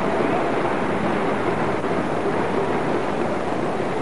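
Steady crowd noise from a cricket ground, an even rumbling hiss with no distinct events, heard through an old television broadcast.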